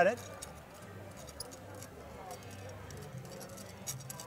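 Faint scattered metallic ticks and clicks as a panic device's vertical metal rod is turned by hand and unthreaded from its threaded connector, over a low steady hum. One sharper click comes just before the end.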